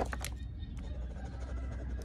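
Steady low background rumble with a few light clicks in the first half-second.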